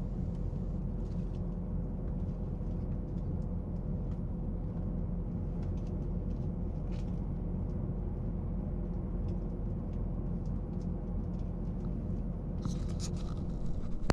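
Cabin noise of a Queensland Rail Electric Tilt Train under way, heard from inside the carriage: a steady low rumble of the running train with faint scattered clicks, and a brief louder clatter near the end.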